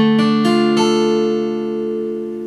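Acoustic guitar in drop D tuning, a D minor barre chord at the fifth fret struck once firmly, then a few lighter strokes in the first second. The chord is then left ringing and slowly fading.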